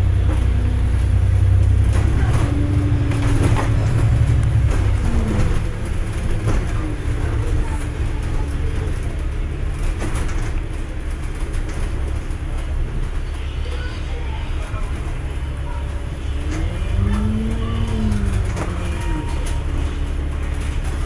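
Inside a moving double-decker bus: a steady low engine and road rumble, heavier for the first few seconds and then easing. A short whine rises and falls about five seconds in and again near the end.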